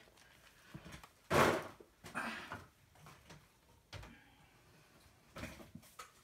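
Small pump spray bottle of Tattered Angels Glimmer Mist being tried out: one short burst of spray about a second and a half in, then a weaker spritz, a light knock near four seconds and another short burst near the end.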